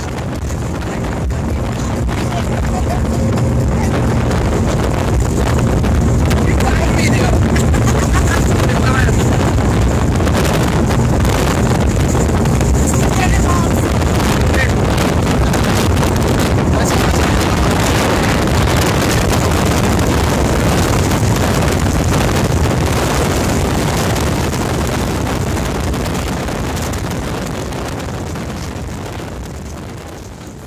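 Motorboat running fast on its Evinrude 175 outboard: a steady engine hum under the rush of spray and wind buffeting the microphone. The sound fades away near the end.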